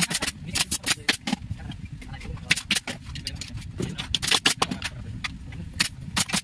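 Sharp, irregular clicks and knocks of hard plastic chair parts being pressed and fitted together by hand and tool during office chair assembly, several a second, over a steady low rumble.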